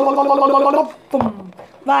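A voice holding one steady note with a fast rattling flutter through it, a vocal trill that stops a little under a second in; a short falling vocal sound follows.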